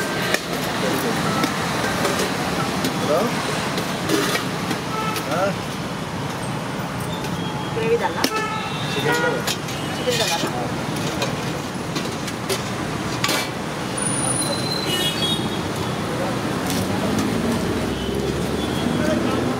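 Busy roadside ambience: indistinct background chatter over steady traffic noise, with occasional vehicle horn toots and scattered clicks of steel serving utensils.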